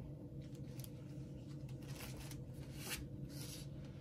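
Faint rustling of a sheet of sewing interfacing being picked up and handled: a few brief soft rustles, the clearest about three seconds in, over a low steady room hum.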